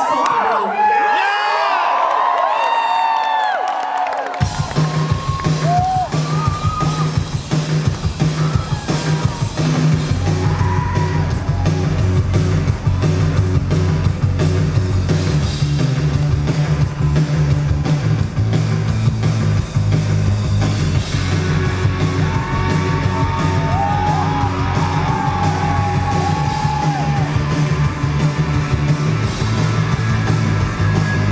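A crowd cheers and whoops for a few seconds. Then a live rock band starts up about four seconds in and plays on loudly, with heavy bass and drums.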